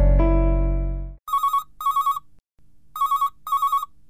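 Soft piano music fades out about a second in, then a mobile phone rings: a warbling electronic ringtone sounding as two double trills.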